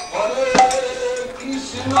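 Devotional bhajan singing: after a brief drop at the start, a voice holds one long note, with a sharp metallic clink about half a second in and a short call of "Oh!" near the end.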